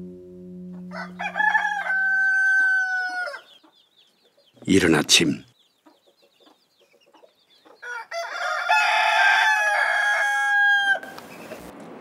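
Rooster crowing at dawn: a long held crow that drops at the end about a second in, a shorter louder call near five seconds, and a second long crow starting around eight seconds.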